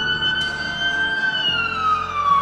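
Emergency vehicle siren in a slow wail: the single tone holds high, then starts to fall in pitch over the last half second.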